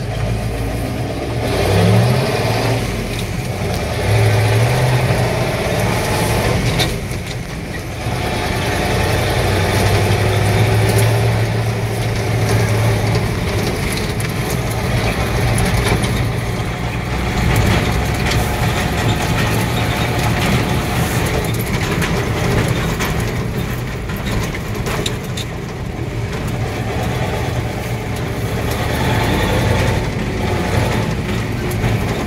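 1959 Ford F-600 grain truck engine, heard from inside the cab, revving up in gear and dropping away between shifts of the floor-shift manual gearbox, then pulling at a steadier pitch.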